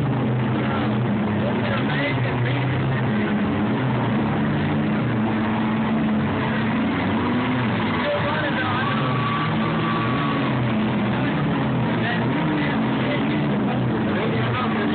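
Several derby car engines running at once, revving up and down, with voices mixed in.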